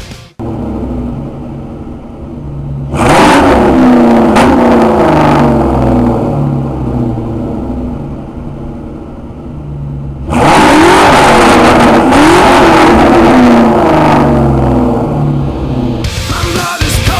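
Ford Mustang GT's 4.6-litre V8 running through a Bassani O/R X-pipe and SLP Loudmouth 1 mufflers. It idles, is revved briefly about three seconds in, settles again, and from about ten seconds in is revved repeatedly and loudly, the exhaust note rising and falling.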